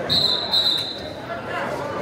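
Referee's whistle blown once, a steady high-pitched blast lasting about a second, over the chatter of spectators in a gym.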